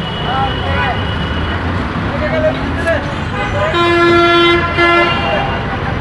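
A vehicle horn sounds about four seconds in: a toot of just under a second, then a short second toot. Under it runs the steady rumble of bus and road traffic at a busy city crossing.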